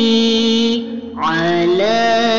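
Sholawat, devotional singing in praise of the Prophet: one long held note that fades briefly about a second in, then a new phrase sung on a rising glide.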